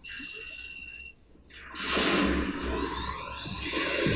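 Sound effects from an animated film's soundtrack. A faint, steady high electronic tone lasts about a second, then after a brief break a rush of noise swells up and holds.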